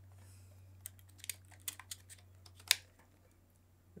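A few short, sharp clicks and taps from hands handling an open laptop's chassis, the loudest near the end, then quiet.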